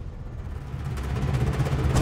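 Dramatic background score: a low drum rumble swelling steadily louder, ending in a sharp hit.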